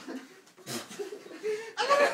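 People laughing, growing loud near the end.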